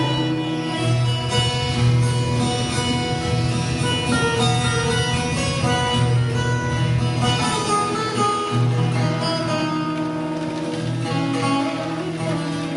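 Live acoustic instrumental music: acoustic guitar and veena playing plucked melody lines over a held low note, with tabla accompaniment.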